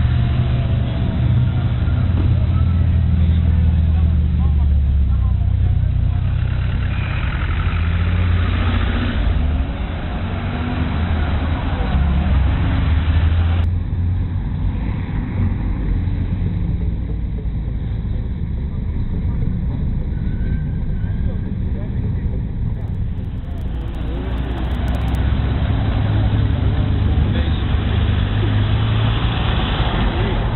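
Engines of classic rally cars running as they drive slowly past along a street, a steady low rumble throughout. The sound changes abruptly about halfway through.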